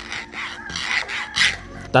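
Fingernail scraping across the ridged layer lines of an FDM 3D-printed plastic part in several quick raspy strokes. The scratchy texture is the telltale sign of an unsmoothed 3D print.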